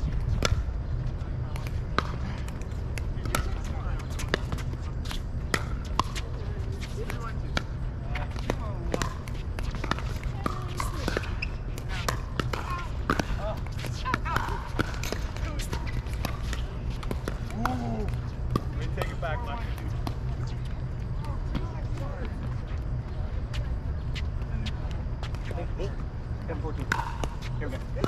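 Pickleball rally: repeated sharp pops of paddles hitting the hollow plastic ball, with the ball bouncing on the hard court, over a steady low rumble. Faint voices come and go in between.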